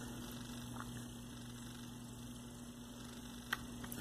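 Steady low electrical hum with a few faint clicks as the metal body and end cap of a brushless RC motor are handled and pressed together by hand.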